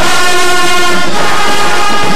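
Marching band's brass section playing loud sustained chords, the notes shifting to a new chord about a second in.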